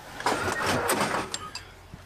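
Metal handling noise on a tank: a rush of scraping and rattling with a few sharp metallic clinks, then it dies down near the end.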